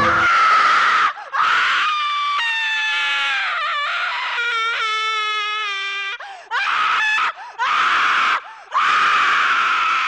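A voice screaming in a series of long, harsh screams separated by short breaks, with a pitched wail in the middle that slides downward.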